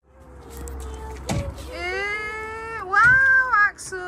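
A child's high voice making long, drawn-out wavering cries that slide up and down in pitch, loudest about three seconds in. A short knock comes about a second and a half in.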